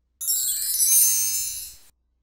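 A jingling, bell-like chime sound effect of many high tinkling tones, lasting about a second and a half, fading and then cutting off abruptly. It sounds as a slide animation plays.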